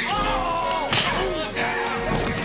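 Punch sound effects in a staged film fistfight: a sharp hit at the start and another about a second in. Between them runs a held, slightly falling tone.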